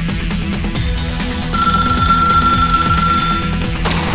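Background music, with a telephone starting to ring about one and a half seconds in: one steady high ring lasting about two seconds that stops just before the end.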